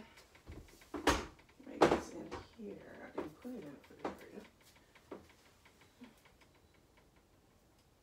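A pantry door is pulled open and things on its shelves are shifted and knocked while someone searches through it. Two sharp knocks about one and two seconds in are the loudest sounds, followed by a few lighter clunks, and it falls quiet after about six seconds.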